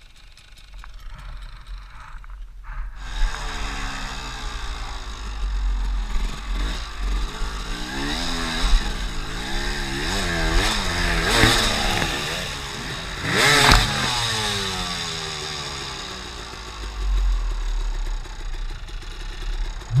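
Enduro dirt bike engine heard from the rider's helmet, quiet for the first few seconds, then revving up and down repeatedly as the bike is ridden over rough, wet ground, with a few louder knocks and clatter from the bumps and low wind rumble on the microphone.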